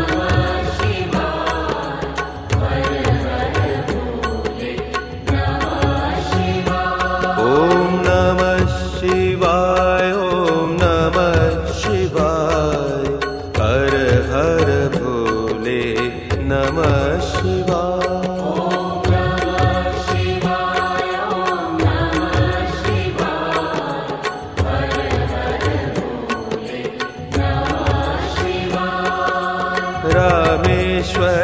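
Indian devotional music: a voice singing a chant-like melody over a held low drone and a steady low drum beat.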